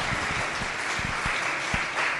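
A small seated audience applauding steadily.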